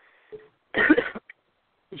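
A man coughs once, a short rough burst about three-quarters of a second in.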